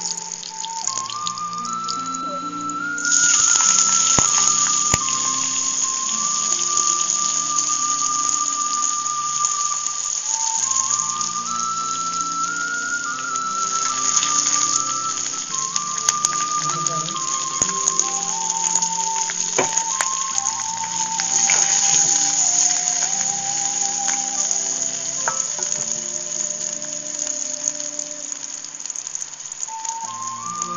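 Oil sizzling in a pan as garlic, sliced onion and green chillies fry. The sizzle grows loud about three seconds in. Background music with a stepped melody plays throughout.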